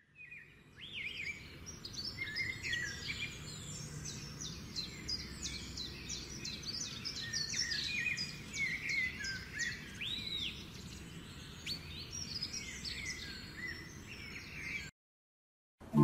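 Birds chirping and singing: many short overlapping chirps and whistles over a low steady background noise. It cuts off abruptly about a second before the end.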